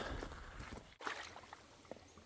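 Faint sloshing and splashing of water as hands pull debris from a clogged culvert inlet in a flooded pool, fading after about a second.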